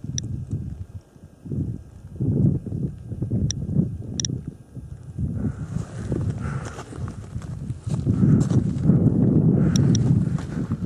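A few short, sharp high clicks from a handheld SOEKS dosimeter held over the ground, set against louder irregular low rumbling and thudding close to the microphone.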